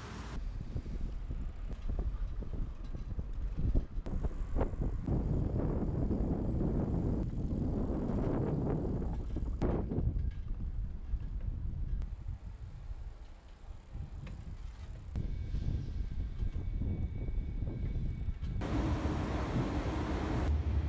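Wind buffeting the microphone with road rumble while riding a Ttareungi public rental bicycle, in several short cuts that change abruptly.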